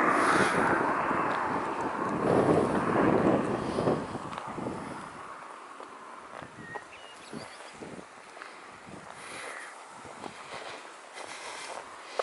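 Outdoor ambience on a country road: a loud, even rushing noise for the first four to five seconds that then fades. After that it is quiet, with a few faint ticks.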